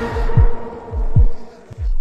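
A dramatic music sting: a loud held chord fading away over several deep booms that drop in pitch, spaced like a heartbeat.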